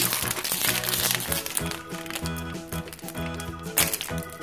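Crinkling of a foil-lined plastic blind bag being pulled open by hand, over background music.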